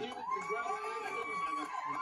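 Men cheering in celebration: one voice holds a long, high 'whoo' for over a second, rising slightly and falling away at the end, over laughter and other voices, heard through a television's speaker.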